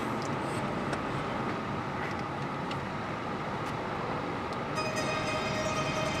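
Steady road and engine rumble heard from inside a moving car's cabin.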